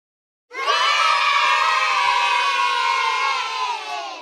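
A crowd of children cheering together. It cuts in suddenly about half a second in, holds for about three seconds with the voices sinking slightly in pitch, and fades out at the end, like an edited-in cheering sound effect.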